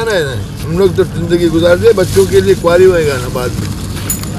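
A man speaking: a fisherman talking in a conversational voice.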